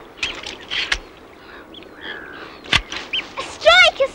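A gull gives one loud rising-and-falling cry near the end, over a few scattered clicks and knocks.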